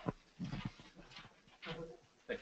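Faint, indistinct voices in short bursts, with a sharp click at the start.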